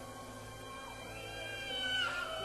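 Live rock band in concert during a quieter passage: sustained, held notes with a note sliding down in pitch near the end.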